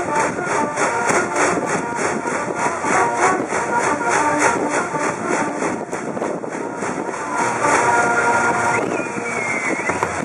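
School brass band and a packed student cheering section performing a baseball cheer song, with held horn notes over a steady quick beat.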